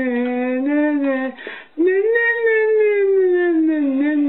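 A high, wordless voice holding two long drawn-out notes, with a short breath break about one and a half seconds in. Each note swells and then slowly slides down in pitch.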